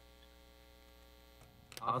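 Steady electrical mains hum, low in level, with a man starting to speak near the end.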